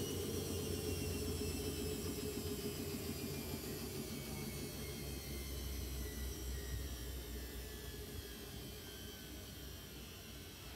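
Electra Microelectronic 900 washing machine winding down after its final spin: a motor whine falls slowly in pitch over a low hum, and the whole sound fades steadily as the drum coasts to a stop.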